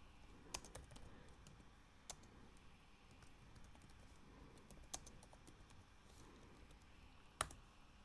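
Faint, scattered keystrokes on a computer keyboard, a few sharp clicks with long pauses between them.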